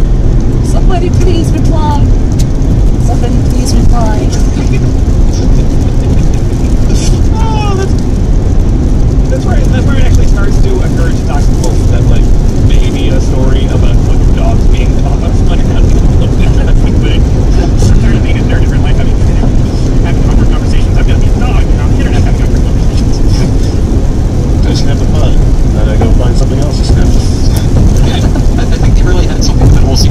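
Steady, loud road and engine noise inside a car cabin at highway speed, with faint scattered voice fragments over it.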